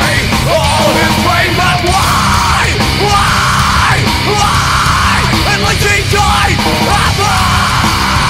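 Crossover metal song playing loud and dense, with distorted guitars, bass and drums under yelled vocals.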